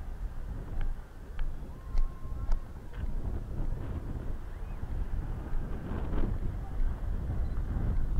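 Wind buffeting the camera microphone in a continuous low rumble, with a few light clicks and faint distant voices.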